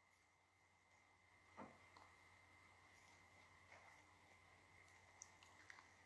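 Near silence with a faint steady room hum and a few faint clicks, one about one and a half seconds in and a couple near the end.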